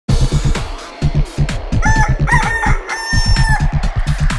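Electronic dance music intro with a steady kick-drum beat from the first instant. A rooster crows over it about two seconds in: two short notes, then a long held one.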